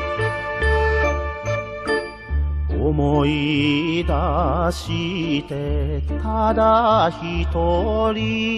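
Japanese enka song: an instrumental passage over a steady, repeating bass pulse. About three seconds in, a singer enters with a strong, wavering vibrato.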